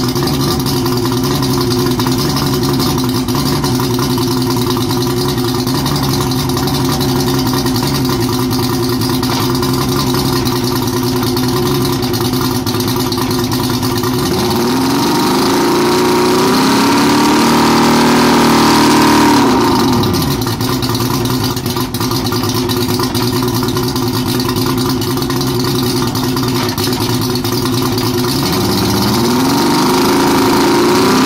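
Yamaha 200 hp outboard motor running with its cowling off: it idles steadily, then about halfway through is revved up smoothly for about five seconds, held briefly and let drop back to idle. A second rev-up begins near the end.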